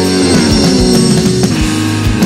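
Instrumental passage of a hard rock song: distorted electric guitars over a drum kit with a steady kick-drum beat, and a falling run of notes shortly after the start.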